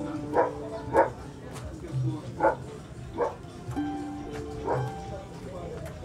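A dog barking in short single barks, several times with uneven gaps, over background music of held notes and a soft low thump every few seconds.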